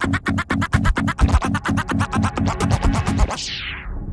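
A vinyl record scratched and cut on a Technics turntable through a DJ mixer: a fast, even run of chopped stutter cuts, about eight a second. Near the end the sound falls away in a downward sweep.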